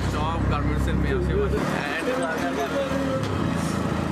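A man talking over the low rumble of a bus cabin; the rumble drops away about one and a half seconds in while the talking goes on.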